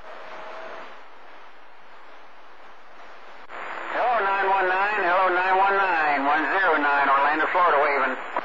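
CB radio receiver hissing with band static on channel 28. About three and a half seconds in, a distant skip signal comes up and a distorted, wavering voice comes through, too garbled to make out, until the end.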